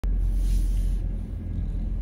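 Low, steady rumble inside a car's cabin: engine and road noise from the vehicle being driven.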